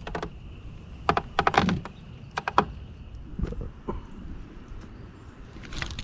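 Irregular sharp clicks and knocks from fishing tackle being handled in a boat, several in quick succession about a second in and again near the middle, over a faint steady hiss and a thin high tone that fades out.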